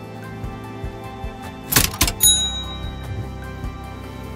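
Background music, with a cash-register 'cha-ching' sound effect about two seconds in: a short rattle, then a bell ringing out briefly.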